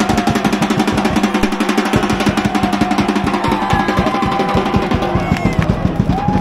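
A supporters' drum being beaten in a fast, continuous roll, loud and steady throughout, as football fans celebrate a win in the stands.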